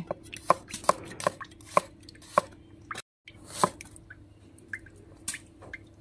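Chinese cleaver slicing garlic cloves and ginger root on a wooden cutting board: sharp knocks of the blade striking the board, about two to three a second, with a short break just past the middle.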